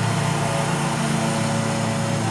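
A steady, unchanging motor hum with a low drone.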